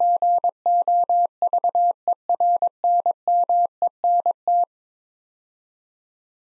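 Machine-sent Morse code at 22 words per minute: a single steady tone keyed into short dits and longer dahs spelling out a two-word set, stopping about four and a half seconds in.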